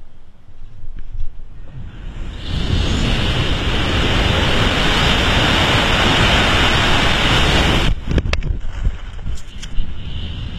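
Wind rushing loudly over the microphone during a BASE jumper's free fall. It builds about two and a half seconds in and cuts off abruptly near the end, followed by a few sharp clicks and quieter wind.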